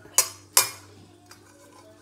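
Metal fork and spoon clinking against a stainless steel pot while mixing cooked instant ramen noodles with their sauce. Two sharp clinks about a third of a second apart near the start, then softer, with one faint tick.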